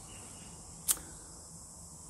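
A single short, sharp click about a second in, over a faint steady background hiss.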